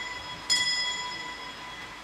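A small bell is struck once about half a second in and rings with a clear, fading tone. The ring of a strike just before is still dying away at the start. It is the bell rung as the congregation is asked to stand, signalling the start of Mass.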